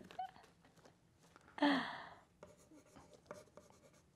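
Pen scratching on a paper lyric sheet in faint scattered strokes, with one short voiced sound, a hum or murmur falling in pitch, about a second and a half in.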